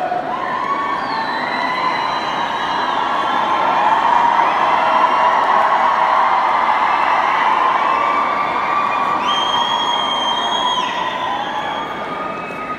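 Arena crowd cheering and screaming, a dense wash of many held high-pitched screams that swells about four seconds in and eases toward the end, with one long shrill scream standing out near the end.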